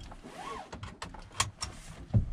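A few light clicks and knocks inside a parked van's cabin as someone moves about in the driver's seat, with a short rising-and-falling whistle-like tone about half a second in.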